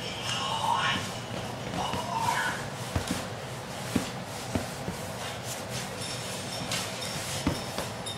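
Several soft thumps and scuffles as a young dog paws and jumps at a person's sock-covered feet and legs on a couch.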